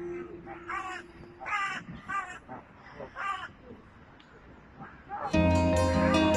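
Held music fades out and a crow caws several times in short, harsh calls over a quiet background. Loud music comes back in suddenly near the end.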